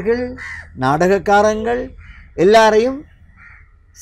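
A man's voice speaking in short phrases, with a crow cawing faintly a few times in the background during the pauses.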